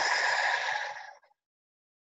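A person breathing out a deep breath, a long breathy exhale that fades away a little over a second in.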